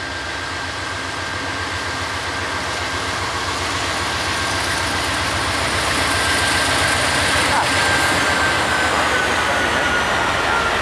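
Norfolk Southern diesel freight locomotives passing close by, their rumble and wheel-on-rail noise building steadily as the lead units go past. A thin steady high whine runs through it and drops slightly in pitch near the end.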